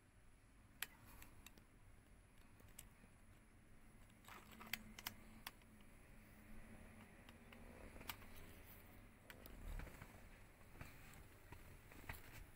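Near silence inside a car's cabin, with a few faint, scattered clicks.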